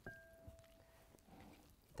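Near silence, with a faint steady tone lasting a little over a second.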